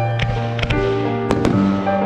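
Fireworks going off over piano music: a handful of sharp bangs and cracks, two of them close together about a second and a half in.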